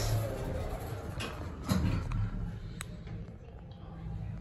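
Otis Series 2 elevator car travelling down: a low steady hum in the cab with a few light clicks and a thump about two seconds in.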